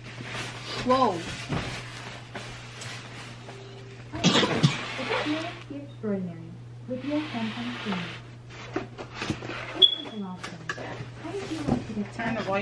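Indistinct voices over a low steady hum, with two bursts of rustling noise about four and seven seconds in.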